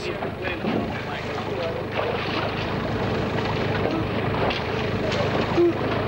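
An engine running steadily under wind on the microphone, with people's voices in the background.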